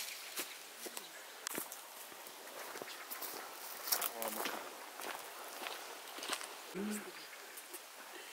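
Footsteps on a stony dirt path: irregular, uneven crunching steps, with a few brief faint voices in between.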